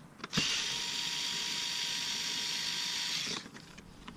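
Cordless screwdriver motor running steadily for about three seconds as it backs out a bumper screw with a Torx T30 bit, then stopping sharply. A click comes just before it starts.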